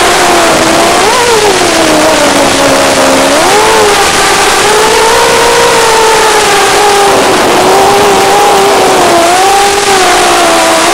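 Racing quadcopter's brushless motors whining, their pitch rising and falling with throttle: a sharp rise about a second in, a sag, then a climb at about three and a half seconds that holds with small wavers. A steady loud hiss lies under it, as in audio carried over an analog FPV video link.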